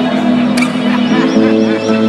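Live band music: held chord tones that change to a new chord a little over a second in, with a high warbling sound repeating several times a second above them.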